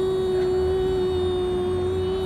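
One long held musical note, a single steady pitch with overtones, sustained without change.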